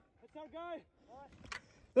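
A voice calling out faintly from a distance, twice, with a single sharp click about one and a half seconds in.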